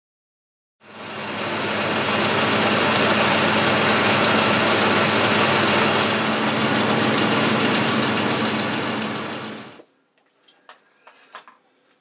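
Boxford lathe running with a boring bar taking the final cut inside a bore to bring it to three-quarters of an inch. It starts about a second in, builds up over a couple of seconds, runs steadily with a high whine over the noise, and stops near the end, followed by a few faint clicks.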